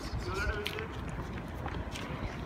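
Faint voices of people calling out over steady outdoor background noise, with a few light clicks a little over half a second in.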